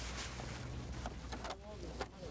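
A vehicle engine idling as a low, steady rumble, with a few short knocks of people handling a load and a voice briefly near the end.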